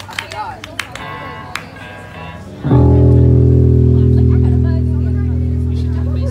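An electric bass through its amp sounds one loud, low note about two and a half seconds in. The note is held and slowly fades. Before it there are a few scattered clicks and quiet voices.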